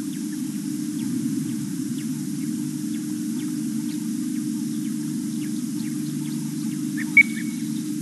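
Waterhole ambience: scattered faint bird chirps over a steady low hum, with one sharp, louder bird call about seven seconds in.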